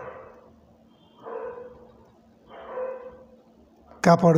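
A dog barking faintly twice, the barks about a second and a half apart, over a low steady hum.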